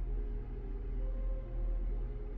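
A steady low hum of room background, with no distinct events.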